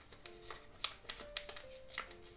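Paper crackling and rustling in several short crackles as a taped paper wrapper is picked open by hand, over quiet background music.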